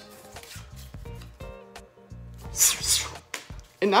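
Quiet background music, with a short bright rustle about two and a half seconds in as trading cards and foil booster packs are handled.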